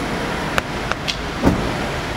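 Steady road traffic noise, with four short sharp clicks in the second half.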